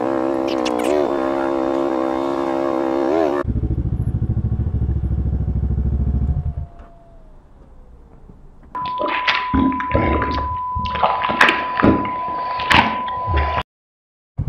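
A held musical note sounds over the first few seconds. A motorcycle engine then idles until it is switched off about six and a half seconds in. After a short lull come clattering knocks over a steady high beep, which cut off suddenly near the end.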